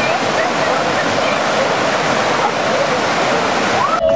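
Small river cascades pouring over rocks: a loud, steady rush of falling water, with faint voices in the background.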